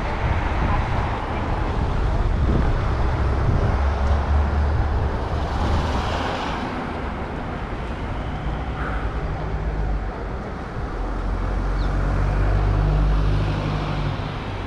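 Wind rumble on a helmet-mounted camera while cycling, with cars driving past on the road; the rumble swells twice, about four seconds in and again near the end.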